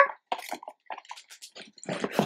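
Small plastic sticker packet crinkling and rustling in the hands as it is opened, in short irregular crackles with a louder rustle near the end.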